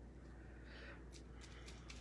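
Near silence with a low hum and a few faint, brief crackles in the second half: plastic bubble wrap coated in gold paint being laid down and pressed onto a painted board.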